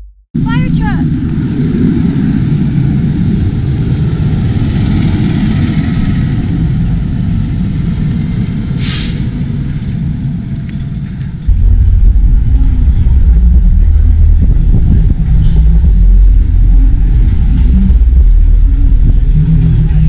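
Street traffic noise with heavy low rumble, likely wind buffeting the microphone as the camera moves, becoming louder and deeper about eleven seconds in. A brief sharp hiss about nine seconds in.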